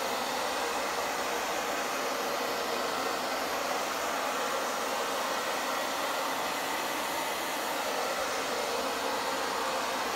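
Handheld blow dryer running steadily, blowing close over wet poured acrylic paint on a canvas to spread it. A continuous, even rush of air that does not change throughout.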